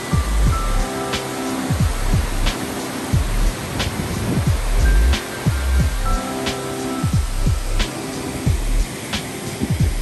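Steady rushing hiss of a small waterfall cascading over rocks into a stream pool, heard under background music with deep drum beats.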